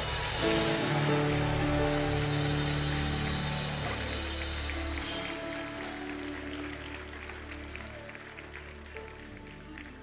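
A congregation clapping over long held musical chords, the applause and music fading away gradually.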